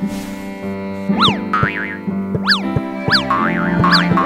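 Cartoon sound effects over background music: from about a second in, a string of quick swooping pitch glides, each rising and falling, roughly one a second, over steady held music notes.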